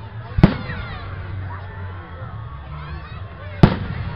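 Two aerial firework shells bursting with sharp, loud bangs about three seconds apart, each followed by a short echo.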